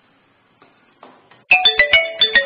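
A quick marimba-like electronic melody starts about a second and a half in, after a few faint clicks.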